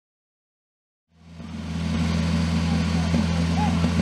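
Engine of a fire-sport portable fire pump in the 1500 cc class running at a steady speed, with a steady low hum; it fades in after about a second of silence.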